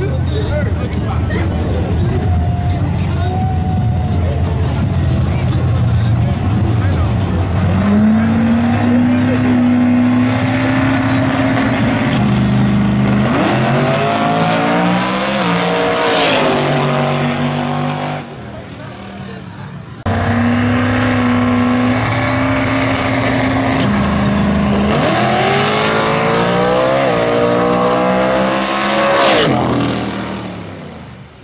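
Drag-race car engines on the start line: a rough idle, then an engine held at a steady high rev for a few seconds before launching, its pitch climbing in steps through the gear changes as the car accelerates down the track. After a sudden drop about two-thirds of the way in, the same held rev and launch are heard again.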